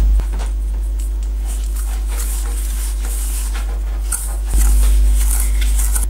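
Wire balloon whisk beating butter and sugar in a stainless steel bowl: repeated irregular scraping strokes of the wires against the metal, starting about a second and a half in. A steady low electrical hum runs underneath and is the loudest sound.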